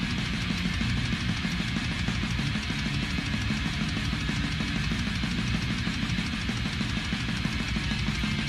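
Instrumental heavy metal music: distorted electric guitar over fast, dense drumming, with no singing.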